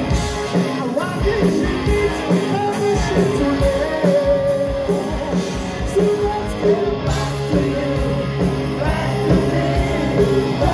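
Live hard rock band playing: electric guitars, bass guitar and drums under a lead vocal, heard from within the audience.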